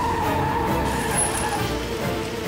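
Car tyres screeching as the car brakes hard to a stop, over dramatic background music.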